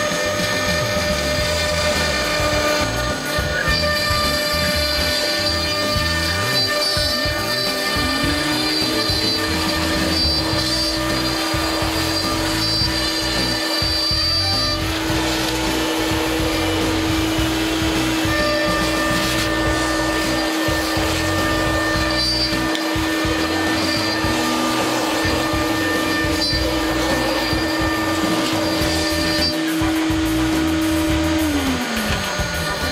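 A CNC wood router cutting: the spindle runs and the stepper motors drive the cutter through the wood along the X-axis. A steady whine rises in pitch about eight seconds in, then holds.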